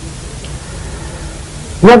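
Steady, even hiss of an old recording, with a man's voice starting again near the end.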